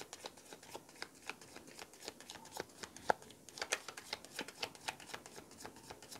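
A deck of tarot cards shuffled overhand, a quick irregular patter of light card slaps and riffles, with one sharper snap about three seconds in.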